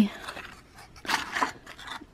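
Thin cardboard gift box being opened by hand: a papery scrape and rustle about a second in, as the flap is pulled back and a cookie is slid out.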